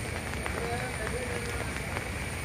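Heavy rain falling over a flooded, fast-running river: a steady hiss, with faint scattered drop ticks.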